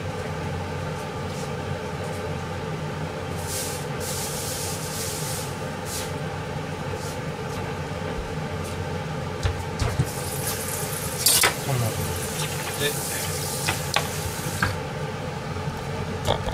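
Kitchen work over a steady hum: hissing comes in two spells, about three seconds in and again from about ten seconds in. Short clicks and knocks of utensils and food being handled run through the second half.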